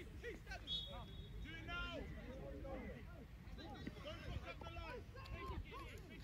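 Faint, distant voices of players and spectators calling out across a football pitch, several people at once, over a steady low rumble.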